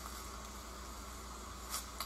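Faint steady background noise with a low hum and no distinct event, in a pause between spoken sentences.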